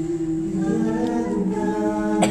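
High school vocal jazz ensemble singing a cappella in close harmony: a low note is held throughout while the upper voices move to a new sustained chord about half a second in.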